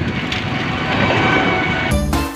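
Steady rushing noise of wind on the microphone and road noise while riding along, building slightly; background music cuts in right at the end.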